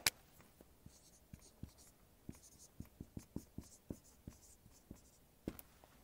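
Dry-erase marker writing on a whiteboard: a string of faint, short taps and scratches of the felt tip against the board as each letter is written.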